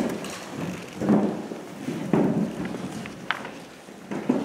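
Several people sitting back down on chairs at folding tables: chairs shifting and bumping, with rustling. There are louder thuds about one and two seconds in and a sharp click near the end.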